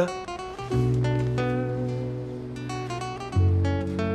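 Background music on acoustic guitar: plucked single notes, then two strummed chords that ring on, the first shortly after the start and the second a little past three seconds in.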